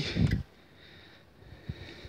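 A near-quiet pause between spoken phrases: a brief low sound at the start, then faint background hiss with one soft click shortly before the end.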